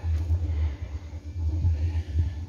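Low, uneven rumble on the camera's microphone, with no clear sound above it.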